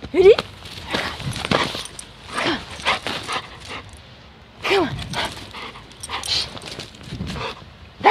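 Golden retriever whining briefly a few times while it moves about in deep snow, with scattered rustling and crunching in between.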